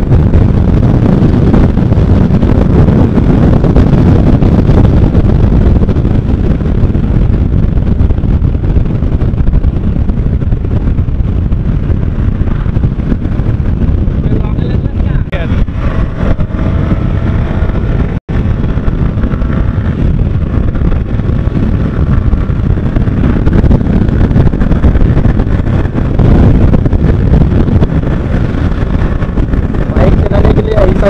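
Loud wind buffeting on an action camera's microphone while a Yamaha R15 V3 motorcycle is ridden at highway speed, with the bike running underneath. The sound cuts out for an instant a little past halfway.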